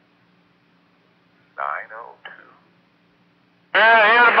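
Railroad two-way radio traffic on a scanner: a faint steady hum, a brief voice fragment about a second and a half in, then a loud, thin-sounding radio voice transmission cutting in near the end.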